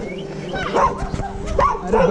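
Dog barking, a quick run of about five short barks.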